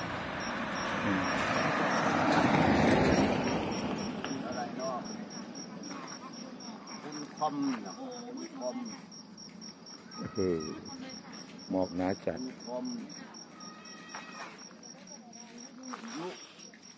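A light box truck drives past on the road, its noise swelling to a peak about three seconds in and fading away. A faint, high chirp repeats evenly, about three times a second, all through.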